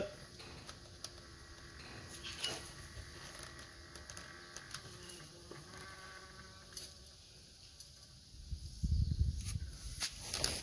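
Quiet workshop handling noises: a few faint clicks and, near the end, a low scuffing rumble as an automatic transmission balanced on a floor jack is steadied by hand.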